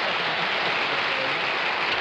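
Studio audience applauding steadily, a dense even clatter of many hands, with faint voices under it.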